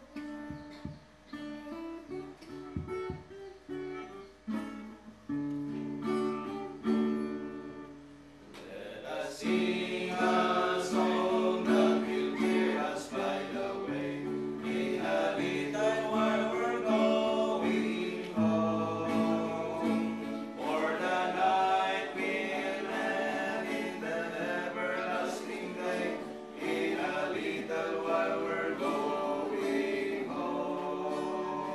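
Acoustic guitar playing an introduction, then from about nine seconds in a small group of men singing a hymn together over the guitar, which goes on strumming.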